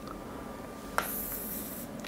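A pen taps the surface of an interactive board about a second in, then slides across it for just under a second with a faint high scratchy hiss.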